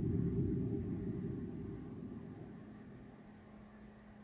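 A deep low rumble from the anime's soundtrack, loudest at the start and fading away steadily over about three seconds.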